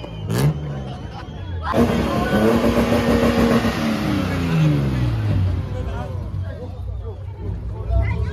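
A car engine starts up loud about two seconds in, held at high revs with a rushing exhaust hiss, then its pitch falls back over a couple of seconds. Voices of the crowd are heard around it.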